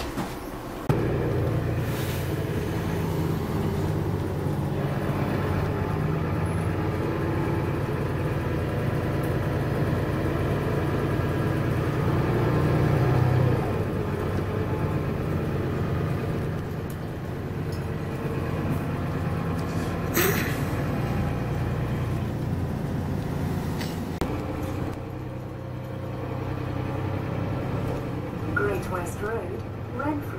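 Mercedes-Benz Citaro bus heard from inside while under way: the diesel engine's steady drone and the rumble of the moving bus, easing off about two-thirds of the way through and picking up again. A single sharp click comes about two-thirds in.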